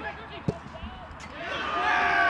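A football struck once, a sharp thump about halfway through, among players' shouts on the pitch. Near the end, loud held shouting swells up.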